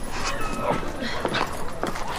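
Busy street ambience: horse hooves clip-clopping, a dog barking and voices in the background.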